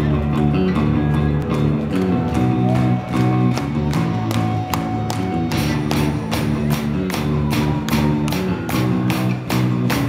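Punk rock band playing live, recorded from the crowd: electric guitar chords over bass, with the drum beat growing stronger from about halfway through.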